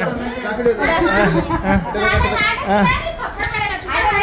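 Several people, children among them, talking over one another in a room: overlapping chatter with no single clear speaker.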